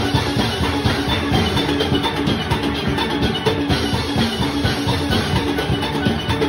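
A steel orchestra playing: many steel pans together over a steady drum and percussion beat, loud and dense throughout.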